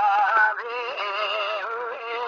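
Dengbêj-style Kurdish folk singing: one unaccompanied voice holding long, wavering, ornamented notes, the pitch sliding up into a sustained note about halfway through.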